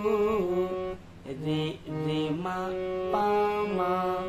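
Harmonium playing a slow film-song melody, holding notes and stepping between them. A voice sings along, sliding and wavering between notes.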